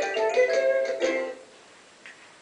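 A short melody of bright, separately struck notes playing from a small electronic device, which stops abruptly about a second and a half in.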